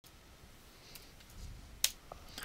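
Faint room noise, then a single short, sharp click near the end.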